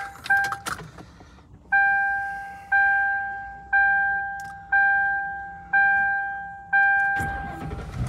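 Dashboard warning chime of a 2003 Mercury Grand Marquis with the key switched on, ringing six evenly spaced dings about a second apart, each fading away. Near the end the car's 4.6-litre V8 cranks and starts.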